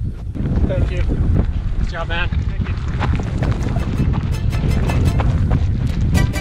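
Wind buffeting the camera microphone in a heavy, low rumble, with a short wavering voice-like sound about two seconds in. Music with a steady beat builds up over the last couple of seconds.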